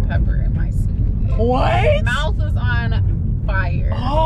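Voices talking and exclaiming, with one rising and falling vocal glide in the middle, over the steady low rumble of a car's cabin on the move.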